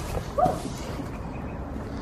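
A woman's short, startled cry, heard once about half a second in, over steady outdoor background noise.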